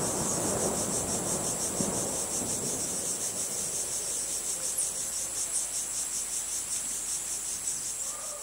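Crickets chirping in a steady, high, pulsing chorus, about four pulses a second, with a soft low rustle underneath that fades out over the first couple of seconds.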